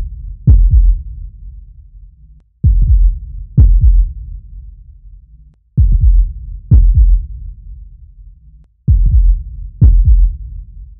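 Soundtrack of deep booming thuds in pairs, like a slow heartbeat: two thuds about a second apart, the pair repeating about every three seconds, each thud dying away slowly.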